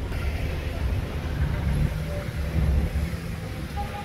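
Low, steady rumble of a car's engine and tyres while it moves slowly in traffic.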